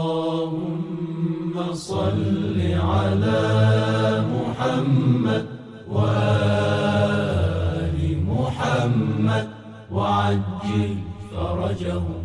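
Male voices chanting a devotional religious recitation in long sung phrases, with two brief pauses.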